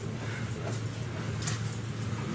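Room noise: a steady low hum with faint hiss, and a faint tap about one and a half seconds in.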